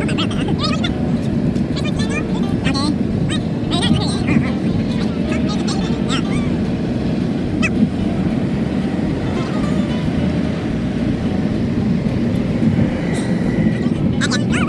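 Steady road and engine rumble inside the cabin of a moving car, with faint, unclear talk in the background.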